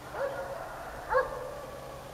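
A dog barking twice, about a second apart, the second bark louder, each trailing off briefly.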